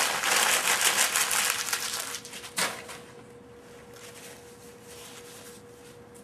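Paper lunch wrapper being crumpled up by hand: loud crinkling for the first two seconds, one more short crunch about halfway, then faint rustling.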